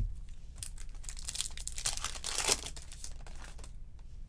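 Foil trading-card pack wrapper being torn open and crinkled by hand: a run of crackling that is loudest about two and a half seconds in.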